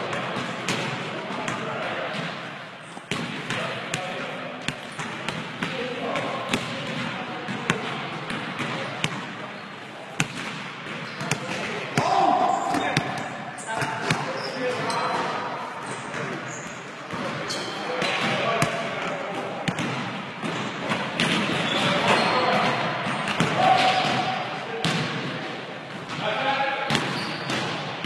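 A basketball bouncing on a hardwood gym floor during a pickup game, with repeated sharp knocks from dribbling and play, while players call and shout to each other in the echoing gym.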